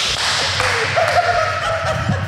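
A man laughing helplessly: breathy, stifled laughter that gives way to a thin, held squeak about halfway through.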